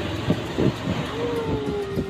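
Outdoor street noise from passing traffic: a steady hiss with a low rumble that fades early on, and a long drawn-out tone falling slightly in pitch in the second half as a vehicle goes by.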